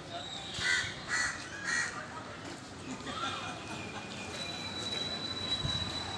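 A crow cawing three times in quick succession, about half a second apart, in the first two seconds, over a background of street noise and distant voices.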